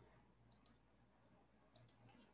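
Near silence broken by faint computer mouse clicks: two quick pairs, one about half a second in and one near the end.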